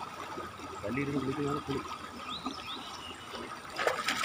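Shallow river water trickling steadily over rocks, with a sharp splash near the end as water is scooped up and thrown by hand.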